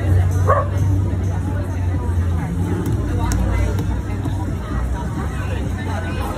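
Outdoor crowd chatter, several voices at once, over a steady low hum.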